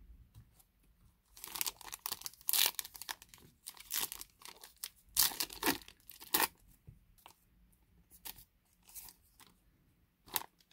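Foil trading-card pack wrapper being torn open and crinkled: a dense run of crackling from about a second and a half in until six and a half seconds. After that come a few light, scattered clicks and rustles as the cards are handled.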